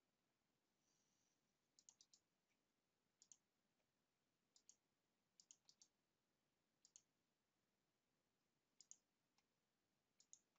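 Near silence broken by faint computer mouse clicks, about six short groups spread through, many of them quick press-and-release pairs, as menus and dialog buttons are clicked.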